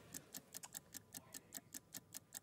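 Faint, rapid, even ticking of a countdown clock sound effect.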